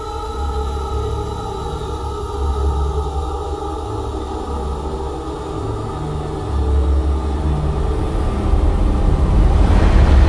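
Dark, ominous intro music of a metal song: sustained droning tones over deep, rumbling bass notes that shift every second or two, slowly growing louder. A rising swell of noise builds in the last half second as the heavy band entry approaches.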